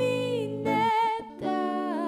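Song passage: a woman's voice holds long wordless notes with a wavering pitch over a soft plucked-string accompaniment, with a short drop in loudness a little past one second in.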